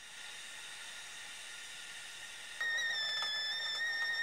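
Stovetop whistling kettle on a gas hob coming to the boil: a steady steam hiss, then about two-thirds of the way through it breaks into a loud, steady whistle.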